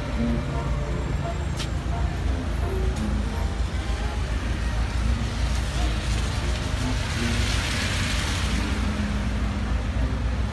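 Street traffic: a steady low rumble of car engines, with a hiss that swells and fades in the second half, over faint music and voices.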